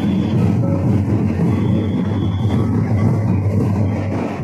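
Loud, continuous folk drumming for a line dance. It comes out as a dense, steady low rumble without clear separate beats.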